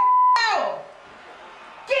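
A short steady beep, the censor bleep laid over a swear word, then a voice sliding down in pitch; speech starts again near the end.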